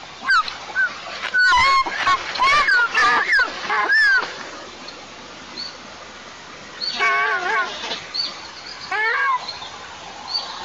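Juvenile white-tailed eagles calling on the nest: a rapid run of high, wavering squealing calls mixed with a few sharp knocks in the first four seconds, then two shorter calls about seven and nine seconds in. Faint songbird chirps sound in the background.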